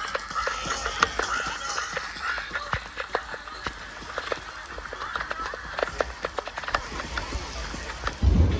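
Heavy rain pouring down: a steady hiss with many sharp ticks of drops striking close to the microphone.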